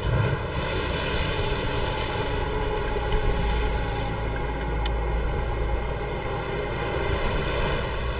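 Heavy surf, waves breaking against rocks: a steady rushing noise with a deep rumble under it that grows heavier about halfway through.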